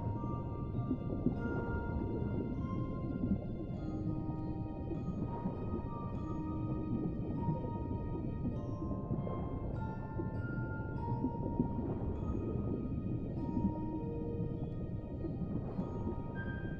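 Music box playing a slow lullaby, about one note a second, over a steady, muffled underwater rumble.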